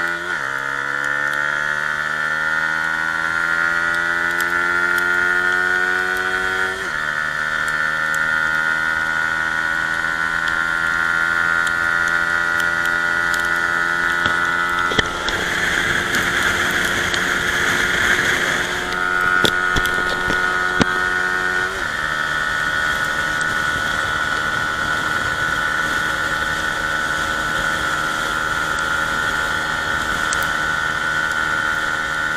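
Yamaha Y15ZR's 150 cc single-cylinder four-stroke engine at full throttle, its pitch climbing steadily and dropping sharply at gear upshifts about seven seconds in and again about 22 seconds in, then holding high as the bike nears top speed. A rushing noise swells for a few seconds past the middle.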